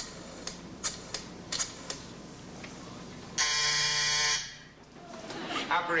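A few sharp clicks of switchboard cord plugs being handled, then, a little past halfway, a loud steady buzz that lasts about a second and stops.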